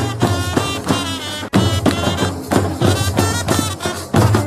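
Middle Eastern folk music with a quick, steady drum beat and a melody line over it.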